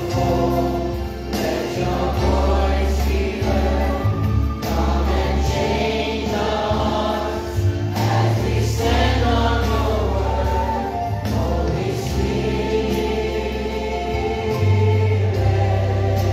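Gospel music: a choir singing over an accompaniment with held bass notes that change every few seconds.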